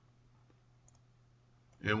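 A couple of faint computer mouse clicks over a low steady hum, then a man starts speaking near the end.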